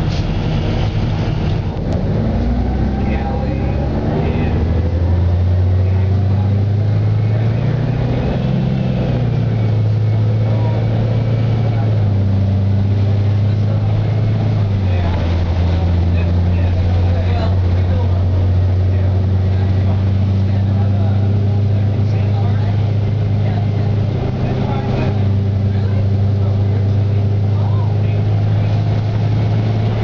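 Cummins B Gas Plus natural-gas engine and Allison automatic transmission of a 2007 Eldorado National EZ Rider II transit bus, heard from inside the cabin as the bus gets under way. The engine drone rises a few seconds in, then drops and settles a few times as the transmission shifts up, and runs steadily in between.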